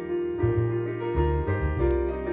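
Double bass played pizzicato, a line of low plucked notes changing every half second or so, with piano chords sounding along with it.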